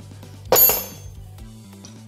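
A single sharp metallic clink of a steel wrench striking metal, ringing briefly.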